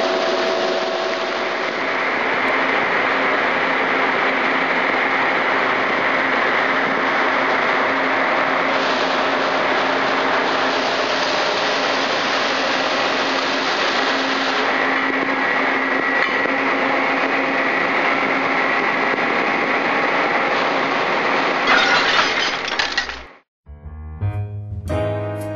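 1987 Mori Seiki SL-5A CNC lathe running with its spindle turning in the low gear range at 300 rpm: a steady mechanical whir and hiss with a faint whine. It cuts off sharply about a second before the end.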